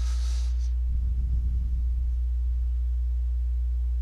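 Steady low electrical hum in the recording, the same few low tones held unchanged throughout, typical of mains interference on the microphone line. A brief soft hiss sits right at the start.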